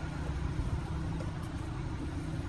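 Low, steady vehicle rumble.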